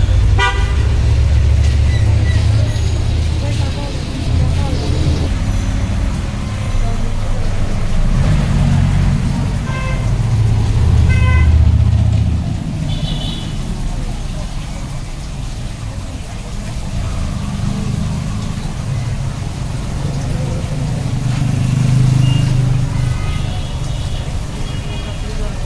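Ambient street noise: a steady low traffic rumble broken by several short vehicle-horn toots, with indistinct voices in the background.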